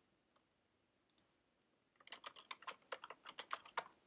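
Computer keyboard: a single keystroke about a second in, then a quick run of keystrokes lasting about two seconds as a pass phrase is typed in.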